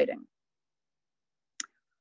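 A single short click in otherwise dead silence, a little over a second and a half in, after a spoken word trails off at the start.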